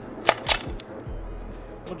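Two sharp metallic clacks about a fifth of a second apart from handling an AR-style rifle, the second with a brief ringing.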